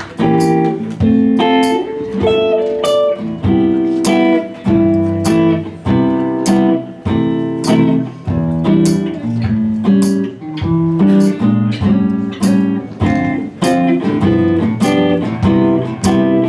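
Acoustic guitar played live: an instrumental run of picked notes and chords in a steady rhythm.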